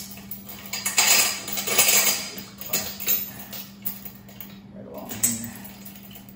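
Steel chain on a log skidding arch's winch clinking and rattling as it is handled, in several separate bursts.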